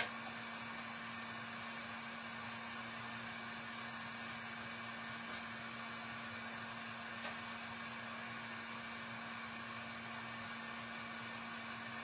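Steady room hum and hiss, with a low steady tone under it, and one faint tap about seven seconds in.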